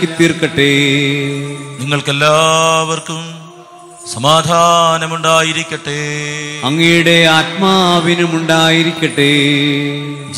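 A man's voice chanting a liturgical chant in phrases, with a short pause about three and a half seconds in, over a steady low sustained note beneath.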